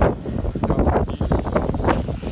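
Wind buffeting a phone's microphone, with irregular crackling handling noise as the phone is moved about.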